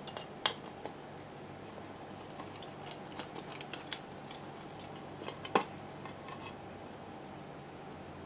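A screwdriver backing out small steel cover screws and the screws being lifted out by hand: scattered light metallic clicks and ticks, with a louder click about half a second in and another about five and a half seconds in.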